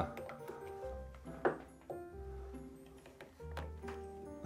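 Soft background music of long, held notes, with one short click about a second and a half in.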